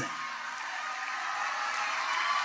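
Church congregation cheering and shouting, a steady crowd noise that swells a little toward the end.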